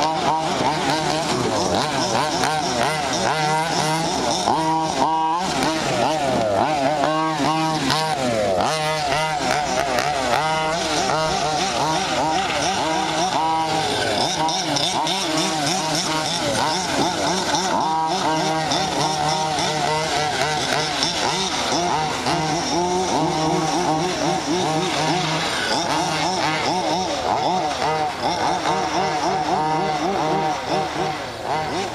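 Two-stroke petrol engines of 1/5th-scale RC cars running hard on a dirt track, repeatedly revving up and dropping back as the cars accelerate and slow, with more than one engine heard at once.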